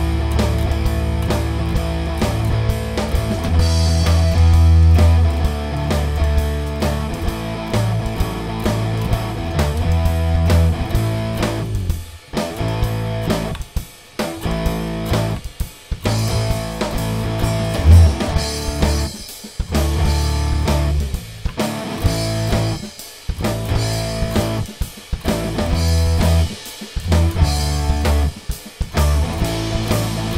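Electric bass guitar, played through an amp simulation, holding low notes against a rock backing of drum kit and electric guitar. Several short stops come in the middle, where everything drops out for a moment.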